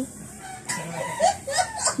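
A few short, faint clucks of a chicken in the background during the second half, over quiet ambient sound.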